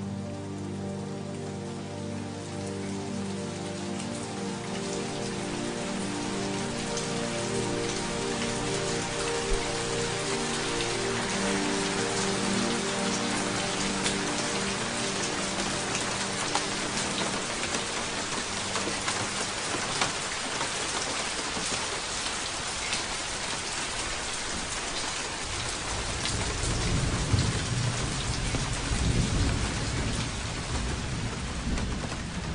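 Steady rain that grows louder, with thunder rumbling near the end. At first a held musical chord sounds under the rain and fades away over the first fifteen seconds or so.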